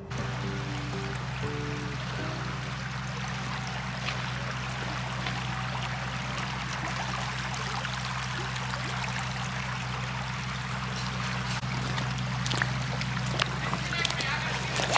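A shallow creek running over gravel and stones, a steady rush, under background music with a low sustained drone. Near the end a boot splashes into the water as someone wades in.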